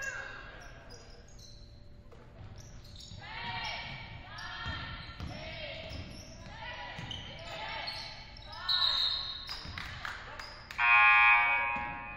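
Basketball dribbled on a hardwood gym floor, with sneakers squeaking and players calling out as they move on the court. Near the end a loud referee's whistle blast of about a second stops play.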